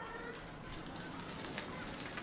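Outdoor ambience of birds giving short calls over a steady background hiss, with faint voices.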